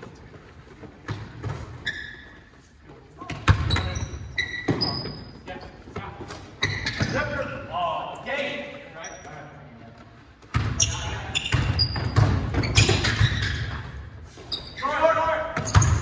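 A basketball dribbled and bouncing on a hardwood gym floor, mixed with short, high sneaker squeaks and players' calls, all echoing in a large hall.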